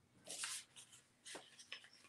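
Pen writing on paper: a few faint, short scratches, the strongest about half a second in.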